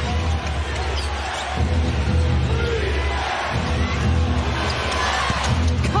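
Basketball arena crowd noise under music over the PA, whose deep bass comes in repeating blocks, with a basketball bouncing on the hardwood during live play.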